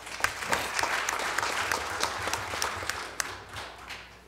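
Audience applauding: a dense patter of many hands clapping that starts at once and dies away near the end.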